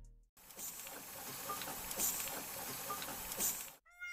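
Crackling, hissing sound effect full of small pops and ticks, cutting off suddenly just before the end.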